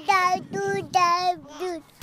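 Short sung logo jingle: a high voice sings about four quick notes, then stops just before the scene changes.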